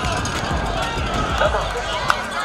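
Indistinct voices of players and spectators calling out and talking across a football field, over a steady background of crowd noise.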